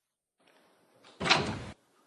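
A single short, sharp noise a little over a second in, lasting about half a second and cutting off abruptly.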